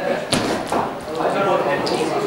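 Voices talking in an echoing indoor sports hall. One sharp knock sounds about a third of a second in.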